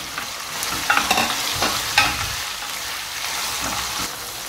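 Diced chicken breast and chopped red onion sizzling in hot oil in a frying pan, stirred with a wooden spoon that scrapes across the pan bottom in a few short strokes.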